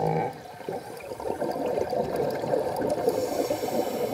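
A scuba diver's exhaled bubbles gurgling from the regulator, heard underwater. A short burst comes at the start, then a denser, steady bubbling sets in about a second in.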